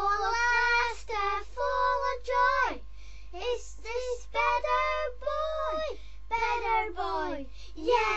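A child's high-pitched voice singing a short run of wordless syllables, about nine notes, each held and then sliding down at its end.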